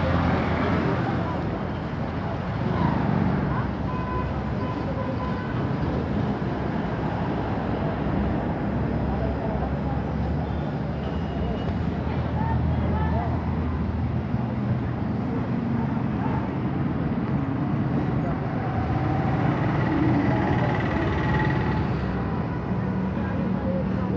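Steady low rumble of engines and street traffic, with voices in the background.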